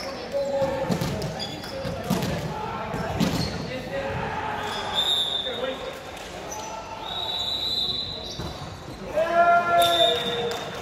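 A volleyball bouncing a few times on a hardwood gym floor, echoing in a large hall. Players' voices, two short high squeaks and a loud shout near the end are also heard.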